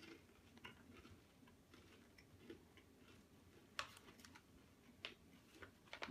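Faint, irregular crunches of a person chewing a crispy rice-cracker snack, with a louder crunch about four seconds in.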